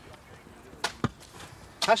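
Two sharp knocks about a second in, a fifth of a second apart, as dressed stone blocks are handled: stone knocking on stone.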